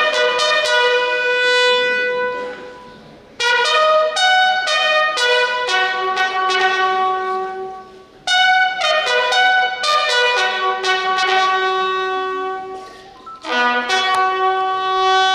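A lone military bugle playing a slow ceremonial call in long held notes. It comes in three phrases, each dying away before the next begins about three and a half and eight seconds in, with another starting near the end.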